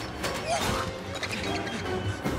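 Film soundtrack music under a busy layer of clicking and clattering sound effects.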